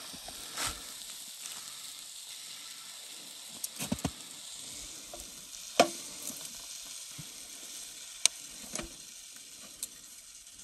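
Water and slush in an ice-fishing hole fizzing and lapping as a lake trout is held in it to recover, a steady hiss with a few sharp clicks and knocks, the loudest about six seconds in.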